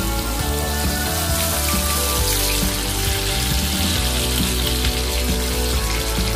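Whole pomfret frying in oil and masala in a pan, a steady sizzle, under background music with held notes.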